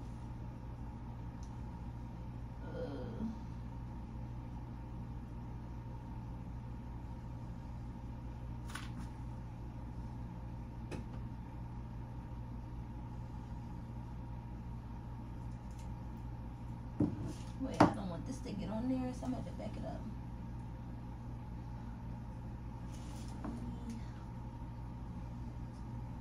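Steady low hum of a quiet kitchen with occasional light clicks and knocks of a bowl and utensils as melted chocolate is spooned into a candy mold. About seventeen seconds in there is a sharp knock, the loudest sound, followed by a brief murmured voice.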